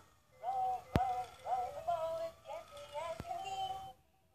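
VTech Move and Crawl Ball electronic baby toy playing a short tune with a synthetic voice singing, with two brief clicks partway through.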